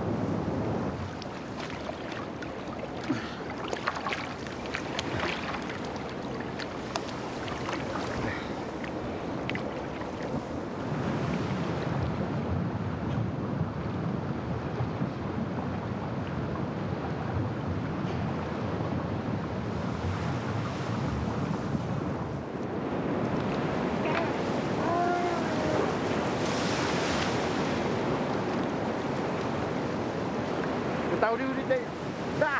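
Shallow lagoon water sloshing and splashing around a man wading in the sea, with wind on the microphone and a few sharp splashes or knocks in the first ten seconds.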